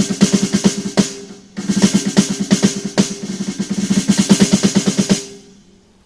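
Snare drum fitted with a D-Drum clamp-on trigger, played with sticks in rapid strokes and rolls so that it triggers the drum module's electronic drum sound, as a test of how the trigger responds. There are two runs of fast hits with a short break about one and a half seconds in, and the playing stops about five seconds in.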